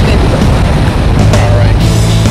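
Wind buffeting the microphone with surf behind, then edited-in background music with steady bass notes coming in a little over halfway through.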